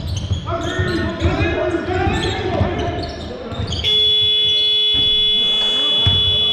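A basketball game buzzer sounds one long steady blast, starting about four seconds in and holding for nearly three seconds. Before it come players' shouts and a basketball bouncing on the court floor.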